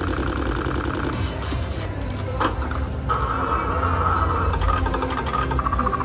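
Pinball slot machine playing its electronic bonus-round sounds: rapid repeated chiming ticks as the ball drops and the bonus-win total counts up, with a sharp click partway through, over a low steady casino hum.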